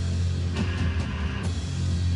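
A rock band playing live: a strong, steady low guitar and bass note held under the drums, with several cymbal hits.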